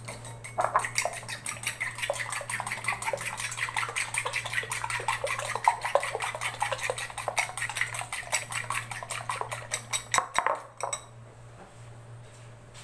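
Eggs being beaten with a utensil in a bowl: a rapid, even clinking of the utensil against the bowl, several strokes a second, stopping near the end.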